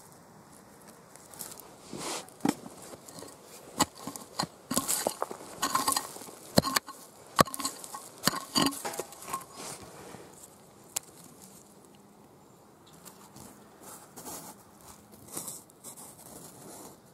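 Loose earth and small stones being dug through and broken apart: crumbly scrapes and rustles with sharp clicks of pebbles, busiest in the first two thirds and then sparser.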